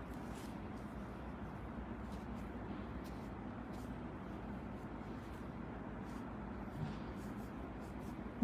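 Quiet steady room noise with faint, light rubbing and ticking sounds as a foam sponge applicator works chrome powder over gel nail tips.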